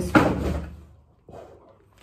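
A sharp knock with a short rustle of plastic packaging as a plastic-wrapped package is handled close to the microphone. It fades within about a second.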